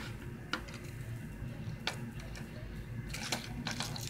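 A handful of sharp, isolated clicks, about a second apart and closer together near the end, from a small hook grabber tool being handled and worked, over a faint low hum.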